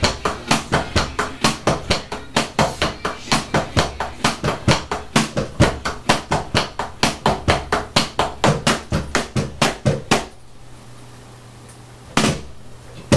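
Drumsticks striking the pads of an electronic drum kit in a steady beat of about four to five hits a second. The playing stops about ten seconds in, leaving a faint low hum.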